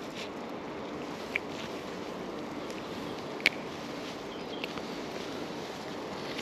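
Steady outdoor background noise, with a few small clicks, the sharpest about three and a half seconds in, as a fish is unhooked by hand from a spinner lure.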